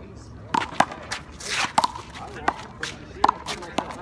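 Small rubber handball being hit by hand and slapping off the concrete wall and court during a one-wall handball rally: a quick series of sharp smacks, about nine in four seconds.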